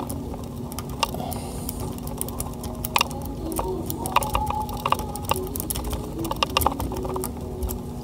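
Rapid, irregular metallic clicking and scraping of a city rake worked in and out of the pin-tumbler cylinder of a Master Lock Titanium Series steering wheel lock, under tension from a tension wrench, as the pins are raked to set. A steady low hum runs underneath.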